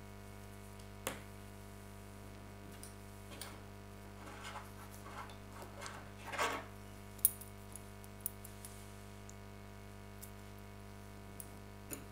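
Faint, scattered small clicks and short rustles of knitting tools and yarn being handled, with a sharp click about a second in, a short louder scrape past the middle and another sharp click soon after, over a steady low hum.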